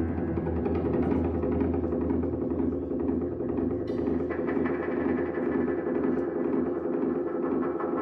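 Live rock band music heard from the audience: a steady, droning, repetitive groove with low sustained tones and light percussion. A higher held tone joins about four seconds in.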